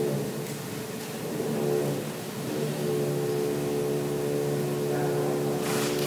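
A steady hum made of several held tones, growing stronger about two and a half seconds in.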